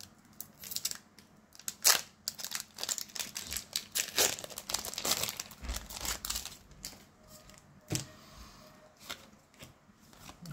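Foil wrapper of a Pokémon booster pack crinkling and tearing as the pack is ripped open and the cards pulled out, in quick irregular crackles that are loudest about two seconds in and thin out near the end.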